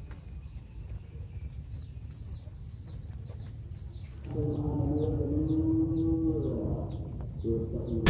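Outdoor ambience of repeated short high chirps over a steady low rumble. About four seconds in, a long, lower, held call lasts about two seconds and dips at its end, and a short one follows near the end.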